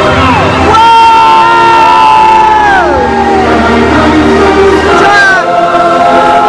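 Loud live stage music, with long held notes that slide down in pitch about three seconds in, over a cheering crowd.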